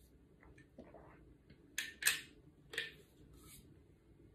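Sips of hot water drawn through the spout of a stainless insulated drinking bottle: three short, sharp slurping sounds between about two and three seconds in, after a few faint clicks.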